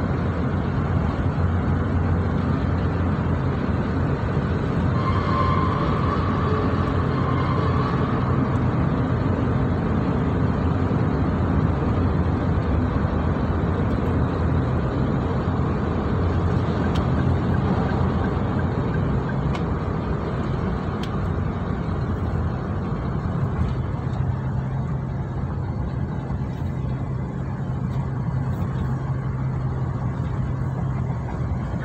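Steady road and engine noise from inside the cabin of a moving car, with a brief higher-pitched tone about five seconds in.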